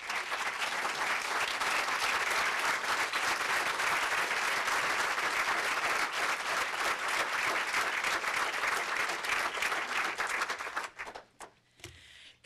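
Audience applauding for about eleven seconds, then dying away near the end.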